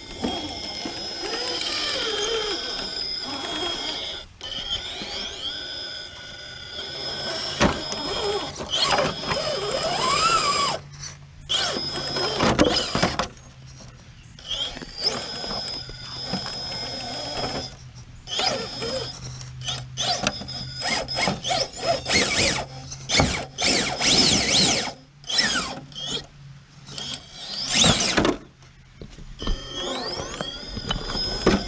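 Element Enduro GSpeed RC rock crawler's electric motor and Stealth X transmission whining in stop-start bursts, the pitch rising and falling with the throttle, with knocks and scrapes as the tires and chassis work over rock.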